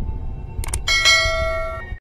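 A couple of quick clicks, then a bright bell-like chime that rings for about a second and fades, over a low steady rumble.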